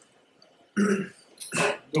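A man coughing and clearing his throat: two short bursts, one about a second in and a sharper one just past halfway.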